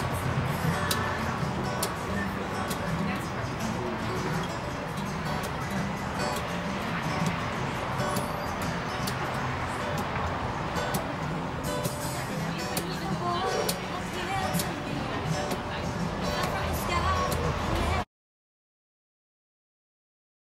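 Acoustic guitar being played, with bass notes that shift from note to note. It cuts off suddenly near the end.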